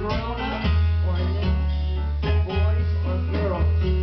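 A live band playing amplified music: plucked guitar lines over deep, sustained bass notes, which come in strongly under a second in.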